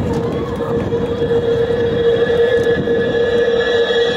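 A loud sound effect over the PA speakers that opens the dance track: a steady droning tone over a rumbling, train-like noise, leading straight into the music.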